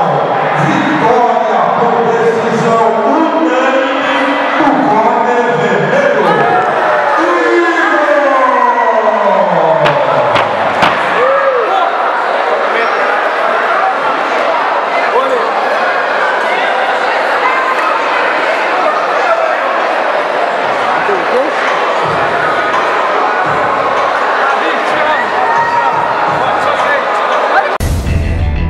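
A boxing-gym crowd in a large hall, many voices cheering and talking at once. Music plays over it for the first several seconds, and a long falling glide in pitch sounds about eight to ten seconds in.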